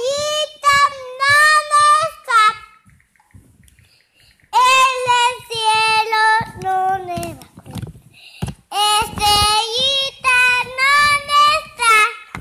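A young child singing a melody in a high voice with held notes: a short phrase, a pause of about two seconds, then steady singing through the rest.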